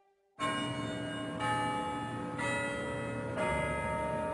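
Church bells ringing, starting about half a second in, with a fresh strike roughly once a second and each note ringing on under the next.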